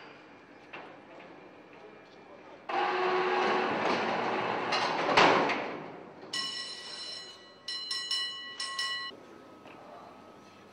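Steel doors of a mine-shaft cage sliding shut with a sudden loud metallic clatter that lasts about three seconds, followed by three short bursts of a high, steady buzzing signal.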